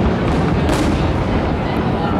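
Fireworks exploding in rapid succession: an unbroken rumble of booms, with a sharper crack about a third of the way in.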